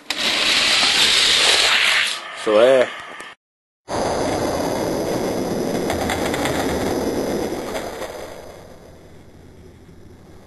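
Die-cast toy cars rolling fast down a plastic Hot Wheels racetrack, set off with a click as the start gate drops. A short warbling tone comes about two and a half seconds in, then a brief gap of silence, and the rolling returns before fading near the end.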